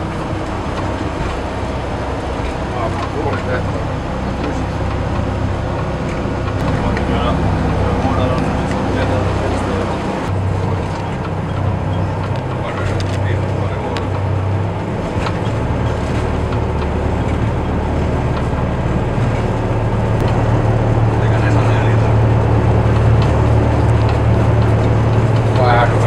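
Twin Scania diesel engines of a patrol boat droning steadily at speed, heard from inside the wheelhouse with water and hull noise. Past the middle the engine hum grows stronger and louder as the boat speeds up.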